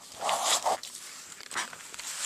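Lined notebook paper rustling and scraping as the notebook is shifted and handled close to the microphone, in a short burst about a quarter second in and a smaller one near the end.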